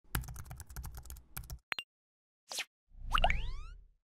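Animated outro sound effects: rapid computer-keyboard typing clicks for about a second and a half, two lone clicks, a short swoosh, then a pop with rising chime-like glides over a low rumble near the end.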